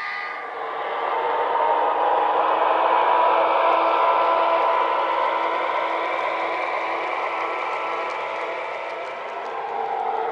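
HO scale model train, a string of 4-bay hopper cars behind a diesel locomotive, rolling past on the track: a steady whirring and clattering of wheels on rail with a steady hum underneath. It grows louder over the first two seconds, eases off in the second half, and rises again near the end as the locomotive nears.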